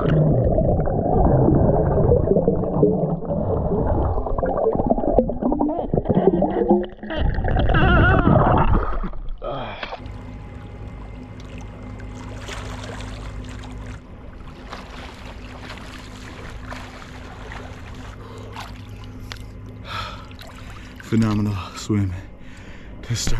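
Muffled underwater swimming sound from a camera held under the water of a swimming pool: water rushing and bubbling around the microphone. About nine seconds in the camera surfaces, and the sound gives way to quieter splashing over a steady low hum.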